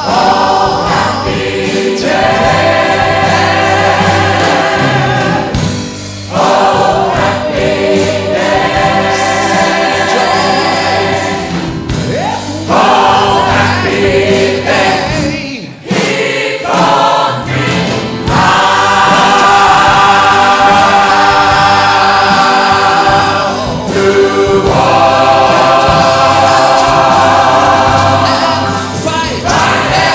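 Gospel choir singing amplified through microphones, with a live band of keyboards and drums. The singing comes in long phrases, with short breaks between them.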